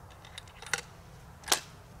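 Handling of a 500 Nitro Express double-barrel rifle as it is readied and shouldered: a few faint clicks, then one sharp click about one and a half seconds in.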